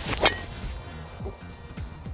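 Driver striking a golf ball off the tee: one sharp crack about a quarter of a second in, over background music.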